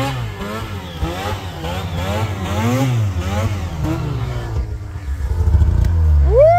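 Arctic Cat Catalyst snowmobile's two-stroke engine revving up and down over and over in quick throttle blips.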